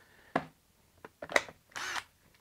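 Handling noise from a DeWalt 12-volt tool and battery pack moved about on a wooden stump: a few short plastic knocks and clicks, then a brief scraping rustle near the end.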